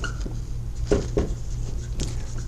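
Dry-erase marker writing on a whiteboard: a few short scratchy strokes, two of them close together about a second in, over a steady low hum.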